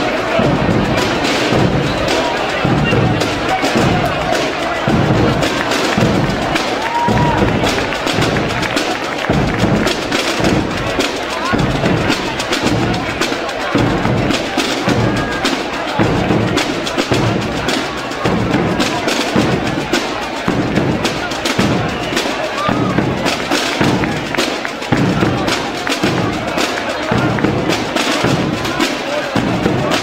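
Aragonese tambores and bombos played together by a drum group: the bombos beat a steady low pulse about one and a half strokes a second under the tambores' rapid sharp strokes.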